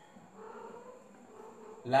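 Dry-erase marker writing on a whiteboard, a faint squeaky scratching lasting about a second and a half.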